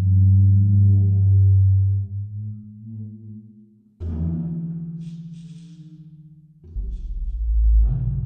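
Sampled 'deep drag' articulation of a large frame drum, a superball dragged slowly over the drumhead, played from a keyboard. It gives low, sustained moaning tones. A new tone starts suddenly about four seconds in, and a deeper, louder one comes near the end.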